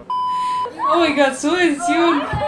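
A steady test-tone beep, about half a second long, of the kind played with TV colour bars, then people talking.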